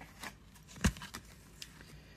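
Tarot cards being handled between readings: a few faint card clicks and rustles, with one sharp tap just before halfway.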